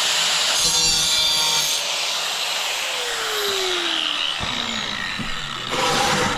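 Handheld angle grinder cutting through a black porcelain floor tile, a steady harsh grinding. In the second half the pitch falls as the motor slows.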